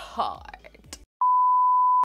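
Edited-in censor bleep: a single steady one-pitch beep, a little under a second long, starting just after a second in, with the speech around it cut to silence.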